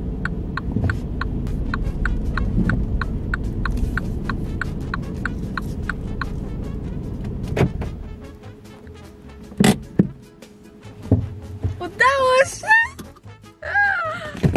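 A Mini Cooper's turn-signal indicator clicking about three times a second over the car's low running rumble, heard inside the cabin as the car is parked. The clicking and the rumble stop about eight seconds in, followed by a couple of sharp knocks and, near the end, a short wavering melodic sound.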